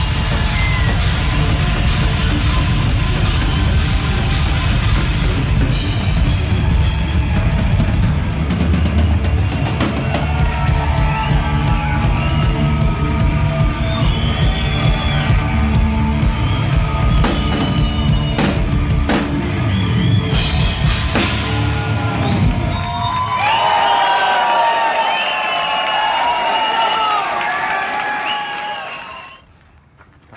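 A heavy metal band playing live and loud, with drum kit, bass and guitars. About three quarters of the way through, the drums and bass stop and only voices singing are left, which cut off suddenly near the end.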